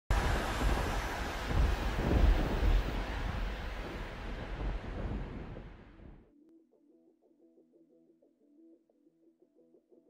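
A loud rushing noise with a deep rumble, like wind or surf, that fades away over about six seconds and cuts off. Then faint music with a quick repeating pattern of notes begins.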